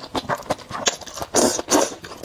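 Close-miked slurping and chewing of thick, saucy noodles: sharp wet mouth clicks, then a longer, louder slurp about a second and a half in.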